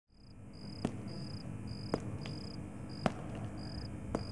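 A cricket chirping in short, evenly spaced trills, about two a second, with a sharp click roughly once a second. The sound fades in at the start.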